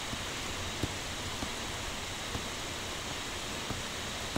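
Steady hiss of microphone background noise, with a few faint taps from a stylus writing on a tablet screen.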